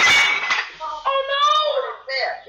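The last of a crash sound effect dying away with glassy clinks, then a young voice saying "oh no" in a sad, drawn-out tone.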